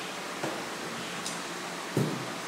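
Steady hiss of room noise, with a faint click about half a second in and a short, sharp knock near the end as something is handled on the desk.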